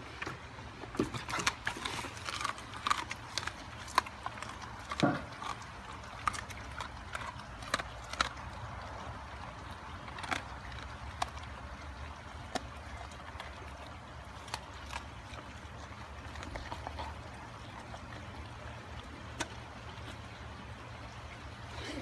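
Bernese Mountain Dog crunching raw duck necks, bones cracking in quick irregular snaps that come thickly for the first several seconds and then only now and then, over a steady low rumble.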